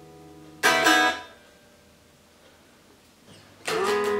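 Unamplified 1994 Made-in-Japan Fender Jazzmaster strummed unplugged, its bare string sound thin and bright. A chord rings out and fades, a quick double strum about half a second in dies away within a second, and after a short pause a new chord is strummed near the end, with a Mustang bridge fitted.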